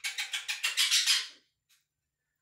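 Quaker parrot making a quick run of imitated kissing sounds, a string of short smacks that stops about a second and a half in.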